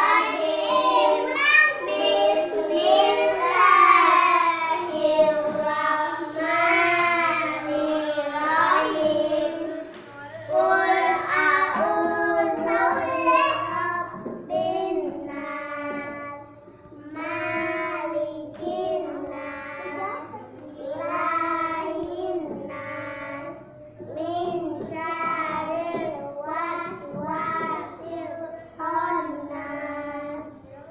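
Young children's voices chanting in unison to a simple sing-song melody, in short phrases with brief pauses between them: Quran verses being memorised by the Kaisa hand-gesture method.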